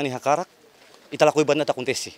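A man speaking in two short phrases with a brief pause between them; only speech.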